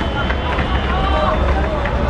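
Distant voices of players and onlookers calling out during a football match, over a steady low rumble.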